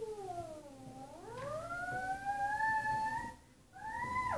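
A small child's long wordless vocal glide: the voice slides down, then climbs and holds a high note for a couple of seconds, followed by a shorter falling call near the end.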